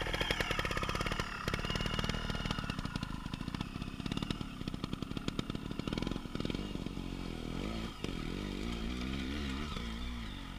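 Dirt bike engines: one idling close by with a fast, even firing beat, then the wavering rev of dirt bikes climbing a boulder sea wall takes over about six seconds in.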